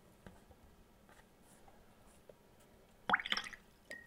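A paintbrush swished in a glass of rinse water about three seconds in, a short watery swirl with a rising pitch. Near the end the brush taps the glass rim once, a sharp clink with a brief ring.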